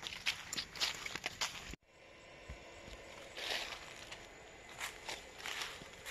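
Footsteps rustling and crackling through dry fallen leaves and grass in short, irregular steps. The sound drops out briefly about two seconds in.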